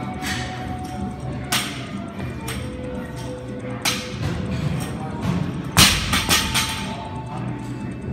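A 30 kg barbell with bumper plates is dropped to the floor about six seconds in, landing with one heavy thud and then a few smaller bounces. Two sharper knocks come earlier. Background music with a steady beat runs underneath.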